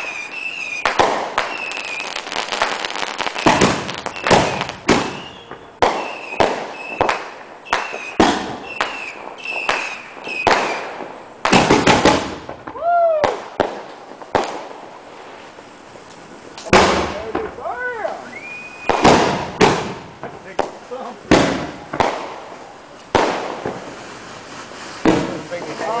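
Aerial fireworks going off in a rapid series of sharp bangs and crackles as shells burst overhead, with a high steady tone sounding through much of the first half.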